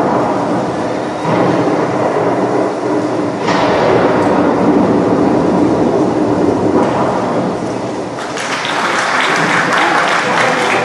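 A recorded show soundtrack playing over the gym's loudspeakers during a winterguard routine: a dense, noisy rumbling passage rather than a tune. A brighter, hissier swell comes in about eight seconds in.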